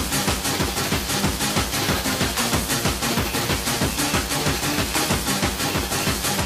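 Fast rave dance music playing from a DJ mix, with a steady, driving beat.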